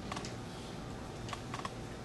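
A few scattered light clicks and taps, sharpest near the start and again past the middle, over a steady low hum of the room.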